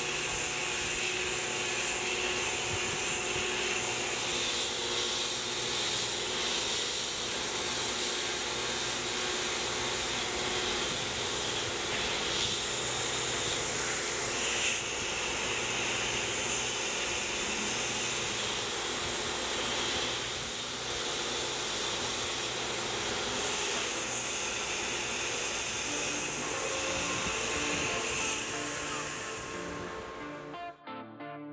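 Tormach 1100 CNC mill cutting an aluminum plate with an end mill: steady spindle and cutting noise under a constant hiss of the coolant spray nozzles aimed at the tool. The noise drops away near the end.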